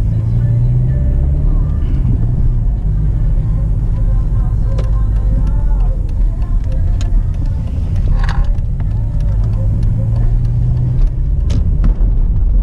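Car engine and road noise heard from inside the cabin while driving through town: a steady low drone with an engine hum that drops away and comes back, and a few light clicks.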